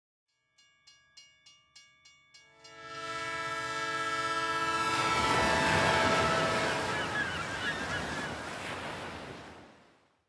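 Train sound effect: a bell struck about three times a second, then a locomotive horn sounding a sustained chord over the rumble of a passing train, which fades away near the end.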